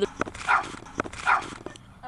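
A dog barking twice, about a second apart, with a couple of light knocks in between.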